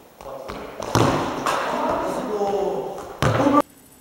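Young voices shouting and calling out in a reverberant sports hall, with a sharp thud about a second in. The sound cuts off abruptly near the end.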